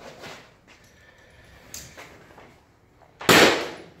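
Powder-actuated nail gun fired once, about three seconds in, its .22-calibre powder load driving a fastener through a wooden wall plate into the concrete floor: a single sharp bang that dies away over about half a second. A few faint clicks come before it.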